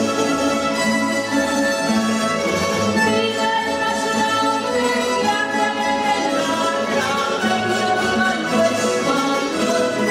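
A Spanish pulso y púa ensemble of bandurrias, lutes and guitars playing a pasodoble, with held tremolo notes. A woman's voice sings over the strings.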